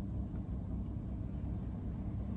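Steady low rumble inside a car's cabin, with no other distinct sound.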